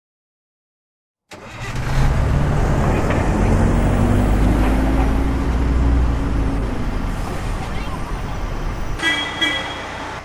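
Bus engine sound effect: after about a second of silence, a large engine starts up loud and runs with a slowly rising pitch, as of a bus pulling away. A short high tone sounds near the end, and the engine settles to a lower, steadier running.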